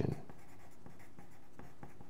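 Graphite pencil writing on paper: faint scratching with short, irregular strokes as letters are formed.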